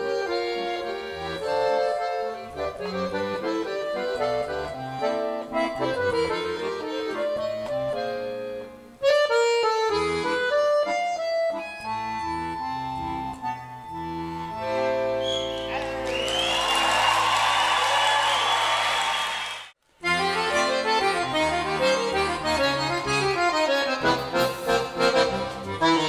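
Piano accordion playing a quick melody with the band, ending on a held chord over steady low notes. Audience applause rises over the final chord about halfway through and cuts off suddenly, and a new accordion tune with the band starts straight after.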